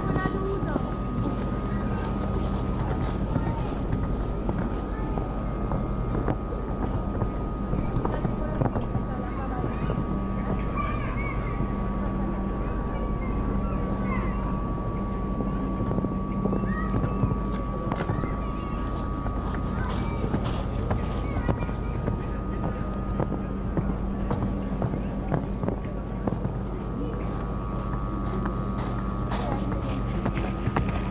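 Horse cantering on sand arena footing, its hoofbeats heard as dull thuds among indistinct background voices, with a steady high hum running under it all.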